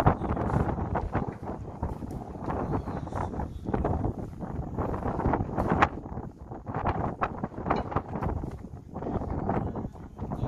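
Sea wind buffeting the microphone in uneven gusts, a rumbling rush that rises and falls throughout.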